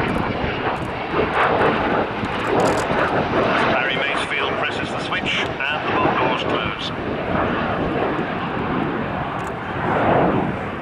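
Avro Vulcan's four Rolls-Royce Olympus turbojets in a low fly-by: a loud, continuous jet rush that swells briefly near the end as the bomber banks away.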